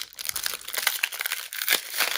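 Foil wrapper of a 1997 Topps baseball card pack being torn open by hand, with a dense, continuous crinkling.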